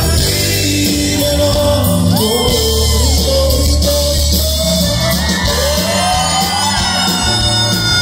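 Live Tejano band music: button accordion, guitar, congas, drums and bass playing together, with a voice singing over them.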